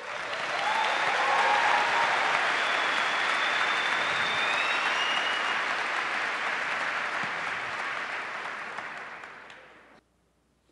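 A large audience applauding. The clapping swells in quickly, holds steady, and fades away over the last couple of seconds.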